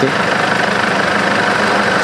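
Ambulance van's engine idling steadily.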